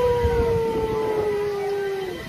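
A rider's long, held vocal cry on a one steady note that sinks slowly in pitch, with wind buffeting the microphone underneath.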